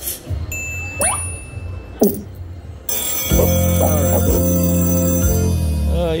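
Rich Little Piggies video slot machine's game sounds: two short pitch sweeps as the reels land. From about three seconds in, a loud, bright musical jingle plays as the free-games bonus is awarded.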